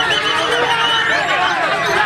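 Dense chorus of many caged songbirds singing at once, white-rumped shamas (murai batu) among them: overlapping rising and falling whistled phrases with no break.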